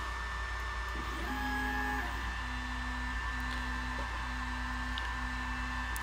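TwoTrees TS2 diode laser engraver's stepper motors whining through a run of quick gantry moves, each a steady pitched tone lasting about a second with short breaks between, over a steady fan hum.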